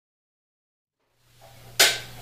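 Silence for about a second, then a faint steady hum and one short, sharp crackle near the end, as blue masking tape is pulled off a glued wooden box.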